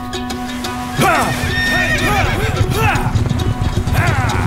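A horse whinnies loudly about a second in, a long neigh that breaks into a quick series of falling, wavering cries, and another whinny starts near the end. Hooves clop underneath, with background music throughout.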